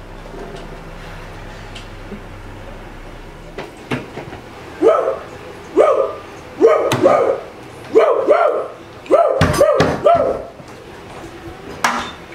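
A woman barking like a dog: about eight short, pitched barks over the second half, with a few sharp knocks among them.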